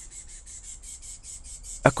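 A high-pitched, rapid pulsing trill of about ten pulses a second, from a small creature, with speech starting again at the very end.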